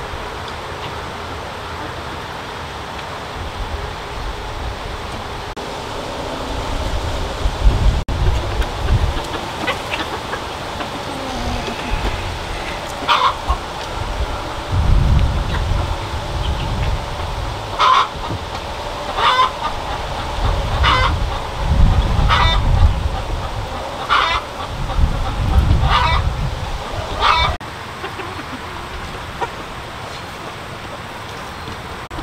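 Hmong black-meat chickens calling: a run of short, repeated calls, about one every second and a half through the second half, over a low rumble.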